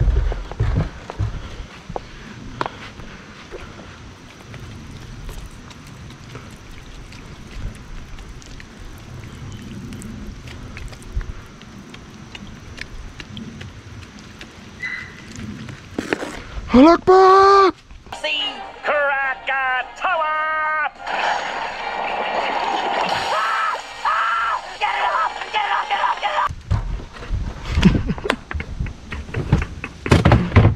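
Footsteps and handling noise, then lighter fluid squirted from a plastic squeeze bottle onto charcoal briquettes in a kettle grill: a run of squeaky, pitched sounds about halfway through, followed by a steady hiss of the liquid stream for about five seconds.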